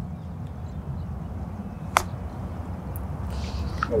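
A putter strikes a golf ball once, a single sharp click about two seconds in, on a short putt. A steady low rumble runs underneath.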